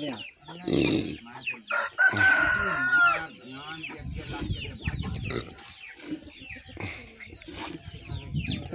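Chickens clucking in a farmyard, with a rooster crowing as a held call about two seconds in.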